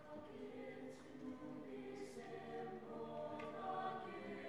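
A mixed high school chorale singing in harmony, the voices coming in together at the start with sustained notes that grow louder, and sharp 's' sounds about one and two seconds in.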